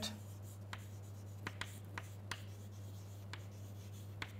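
Chalk on a chalkboard as a word is written by hand: faint taps and scratches, a few short clicks spaced irregularly, over a steady low hum.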